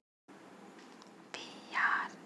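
A brief breathy sound from a person's voice near the end, with a faint click shortly before it, over low hiss.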